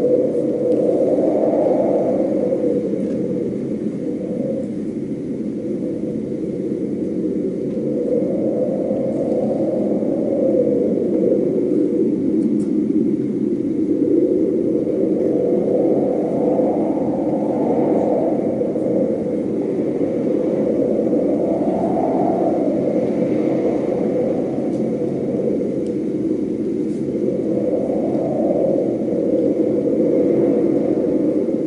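A loud, low rumbling drone that swells up and fades back every several seconds, a stage soundscape played during a dark scene change.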